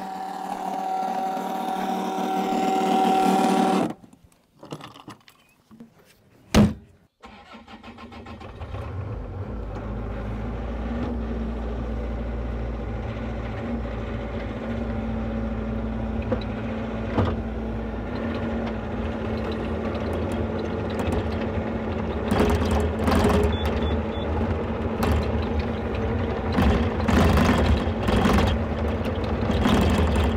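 A steady whine, typical of the electric fuel transfer pump, runs for about four seconds and cuts off. A single sharp knock comes about six and a half seconds in. Then the Bobcat E42 mini excavator's diesel engine starts and runs steadily, with clanks and knocks over it in the last third.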